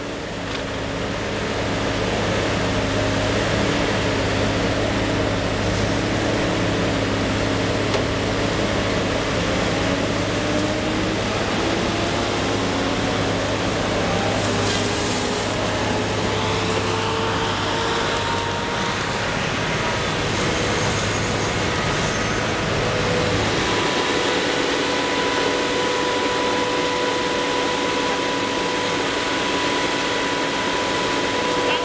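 Tracked tree harvester running, its diesel engine and hydraulics working steadily as the boom and felling head move. The machine's tones rise slowly in pitch through the middle, a deep hum drops away a little after halfway, and a brief hiss comes about halfway in.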